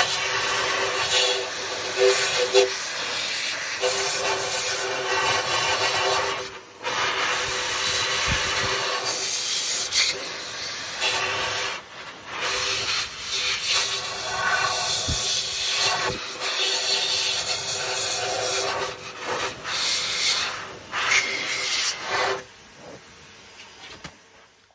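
Hand-held electric dryer blowing air into the rear hub housing of a motorcycle's single-sided swingarm to dry it after a wash-down: a steady rush of air with a faint hum, dipping briefly a couple of times and falling away near the end.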